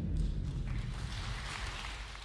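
The low tail of the song's final chord dies away. Scattered audience applause starts about half a second in and fades out near the end.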